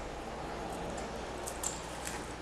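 Faint steady hum with light rustles and a soft click about one and a half seconds in, from thin wire being drawn and wrapped around the wooden pegs of a coil-winding jig.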